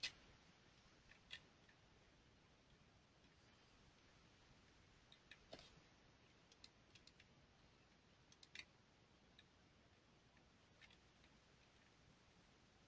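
Faint computer mouse clicks over near silence: about a dozen scattered clicks, some in quick pairs or short clusters, the loudest right at the start, as points are picked along a nerve trace in the software.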